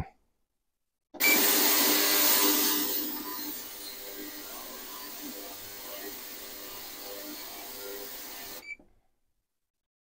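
A 240-watt, 40 kHz ultrasonic cleaner switched on and running on its heated cleaning fluid: a loud hiss for about two seconds that settles to a quieter steady hiss with a faint hum. It starts about a second in and cuts off suddenly near the end.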